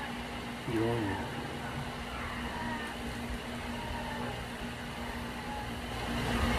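Steady background hum and hiss with a constant low tone, and a short low vocal sound about a second in.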